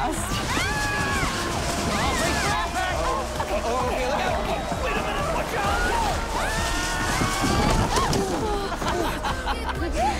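Background music under a crowd cheering and shouting excitedly, with several voices calling out over one another.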